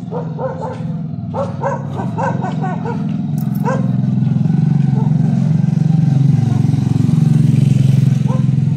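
A small motorbike engine running steadily, growing louder as the bike comes up the street and passes close near the end. A dog running alongside it barks several times in the first few seconds.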